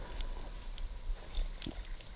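A sharp click, then a few faint ticks and rubbing as a small electric fuel shutoff solenoid and its metal mounting bracket are turned in the hands.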